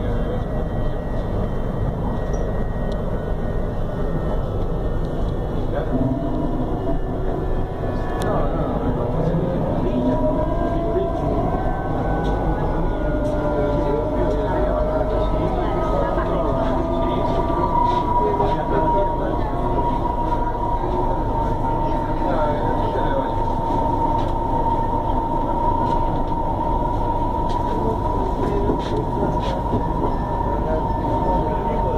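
CSR electric multiple unit running, heard from inside the passenger car: a steady rumble of wheels and running gear under the whine of the electric traction drive. The whine's tones glide in pitch over the first half, then settle into one steady high whine.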